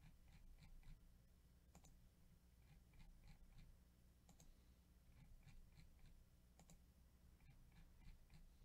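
Faint computer mouse clicks: a sharp click about every two and a half seconds, with lighter ticks between, over a steady low hum.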